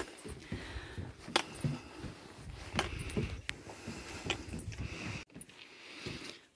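Footsteps on a wooden boardwalk, a few irregular knocks over low handling rumble, cutting out abruptly near the end.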